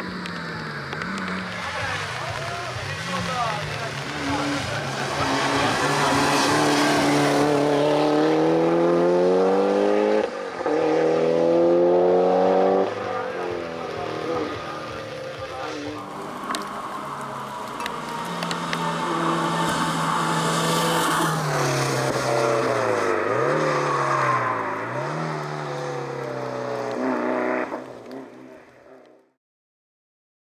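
Mitsubishi Lancer Evo 8's turbocharged four-cylinder engine accelerating hard uphill in a hill-climb run, the revs climbing and breaking at several gear changes. Later the revs dip sharply twice and pick up again, and the sound fades out near the end.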